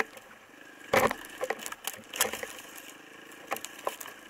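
Twigs and snow-laden branches snapping and brushing against the ride as it pushes along a narrow overgrown trail. The cracks come irregularly, several in a few seconds, over a faint steady hum.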